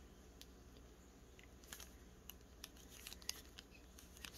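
Near silence broken by a few faint, scattered clicks and crinkles of a small clear plastic zip bag being handled.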